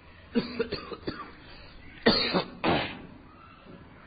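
A person clearing their throat with a few short rasps, then coughing twice in quick succession.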